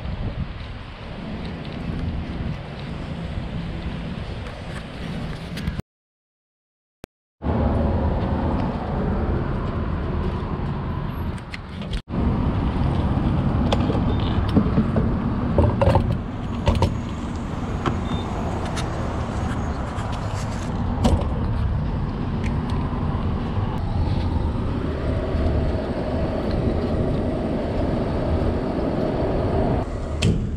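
Steady vehicle and traffic noise outdoors, cut off by a brief silence about six seconds in. After the silence a louder steady noise follows, with scattered clicks, while a car is being refuelled at a gas pump.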